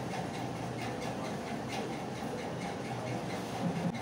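Steady background hum and hiss with faint, evenly spaced ticks running through it.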